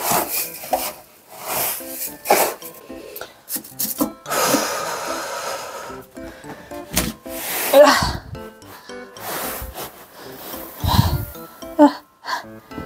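Cat litter being scraped by hand out of a plastic litter box and dropped into a plastic bag: repeated gritty scraping strokes, a longer run of pouring grains a few seconds in, and a heavy thump near the end as the box is lifted and tipped. Light background music plays underneath.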